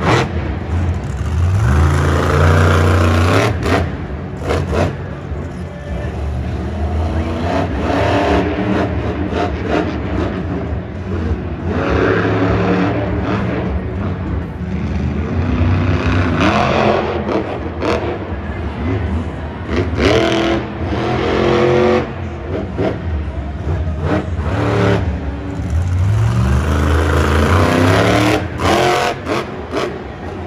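A monster truck's supercharged V8 engine revs hard again and again during a freestyle run. Its pitch climbs steeply about six times, each surge lasting a second or two, over a constant background of arena noise.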